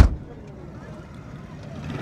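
A single sharp knock right at the start, then steady low background noise of an outdoor car market with a low rumble of vehicles.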